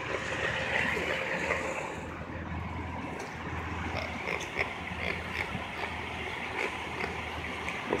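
Street traffic background: a steady wash of noise with a low engine hum that swells a few seconds in, and a few faint clicks.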